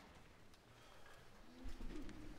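Quiet pause in a hall full of seated wind-band players: faint shuffling and small knocks. A short, soft low hum comes near the end.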